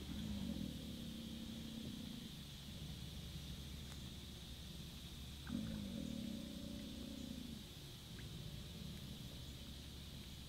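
American alligator growling: two low, drawn-out growls about two seconds each, one at the start and one about halfway through, part of a repeating series. A territorial growl, an alligator establishing its territory.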